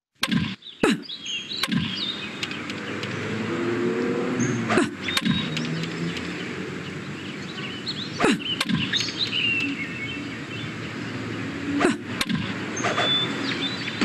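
Cartoon sound effects: birds chirping over a steady outdoor hiss, broken several times by sharp cracks of a baseball bat hitting a ball, one of them about eight seconds in.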